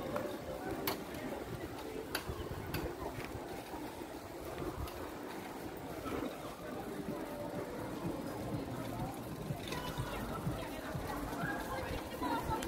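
Outdoor street background of indistinct voices and chatter from people nearby, with a few sharp clicks in the first few seconds.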